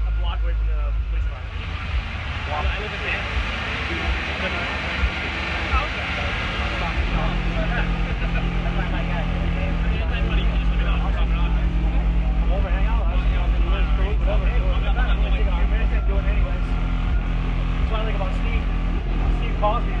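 Car audio subwoofers playing deep bass during an SPL competition run, heard from outside the vehicle. The bass grows louder and steadier about seven seconds in, with a fast pulsing. Inside the car the meter logs 143.0 dB.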